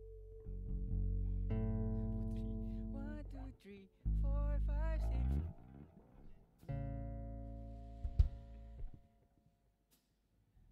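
Electric guitar and bass guitar sounding loose held notes and chords, with deep bass notes underneath and a few notes bent so their pitch wavers. A sharp knock comes near the end, then the sound dies away.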